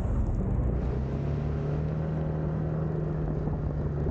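Motor scooter engine running as the scooter picks up speed, holding a steady low note from about a second in, over low road rumble.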